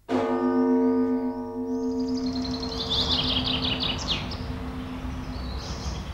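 A single bell-like chime struck at the start, ringing and slowly fading over about five seconds. Birds sing high trills over it from about two seconds in.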